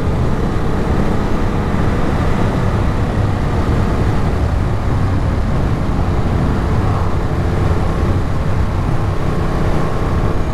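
Ducati Monster 937's V-twin engine running steadily at a constant cruise in sixth gear at about 60 mph, mixed with wind noise.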